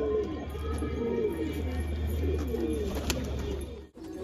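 Domestic pigeons cooing in a loft: several low, overlapping coos over a steady low hum. The sound cuts off abruptly near the end.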